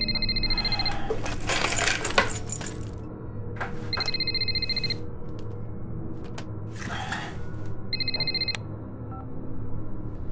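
A phone ringing with an electronic trilling ring three times, each ring about a second long and about four seconds apart. Between the rings come bursts of bedding rustling as the sleeper stirs and reaches for the phone.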